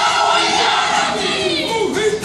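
Kapa haka group of men and women chanting and calling out together, many voices overlapping, with a falling vocal glide near the end.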